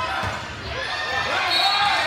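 A volleyball spiked for a kill, thudding and bouncing on the hardwood gym floor, with voices over it in the echoing gym.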